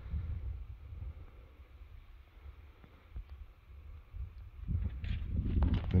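Wind buffeting the camera microphone, a low rumble that eases off in the middle and rises again near the end.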